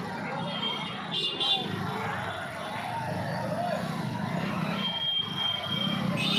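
Busy street crowd: many people talking at once, with a low hum of traffic underneath. A high steady tone sounds briefly near the start and again for about a second near the end.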